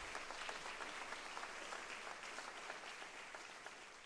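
Audience applauding, the clapping slowly dying away toward the end.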